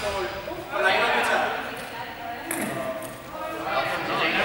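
Indistinct voices of a group of people talking in a large, echoing sports hall, with one short sharp knock about two and a half seconds in.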